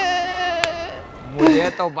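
A man's drawn-out, wavering wail of mock crying, slowly falling in pitch and dying away about a second in, with a brief click partway through. A man starts talking near the end.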